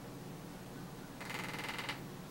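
Quiet room tone, then a short rapid rasping rustle a little past the middle, lasting under a second.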